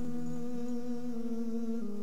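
Soft background music of sustained hummed notes: a held, pitched tone that steps down in pitch near the end.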